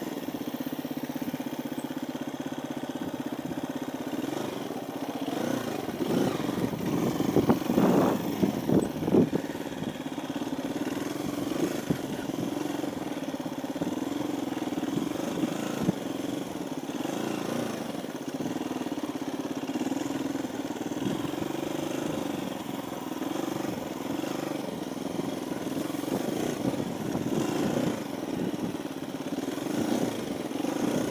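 KTM 350 EXC-F dirt bike's single-cylinder four-stroke engine running steadily at low trail speed, with a louder, uneven stretch of throttle about six to ten seconds in.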